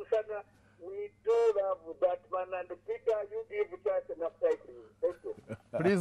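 Speech only: a caller's voice coming in over a telephone line, with a steady low hum on the line that stops shortly before the end.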